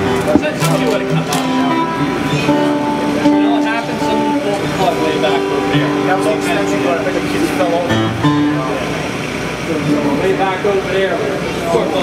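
Electric guitar sounding a few loose, long-held notes on stage, with people talking over it.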